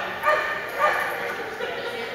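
A dog barking, two short barks about half a second apart, with people talking in the background.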